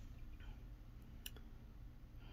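Quiet room tone with a brief faint click a little past halfway.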